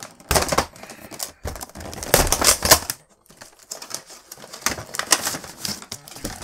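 Cardboard box and clear plastic clamshell of a computer mouse's packaging being pulled open and handled: a run of irregular crackles, crinkles and scrapes of card and plastic, with a short lull about halfway.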